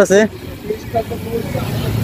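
Street traffic and road noise heard from a moving bicycle, with a low motor-vehicle rumble that grows louder in the second half.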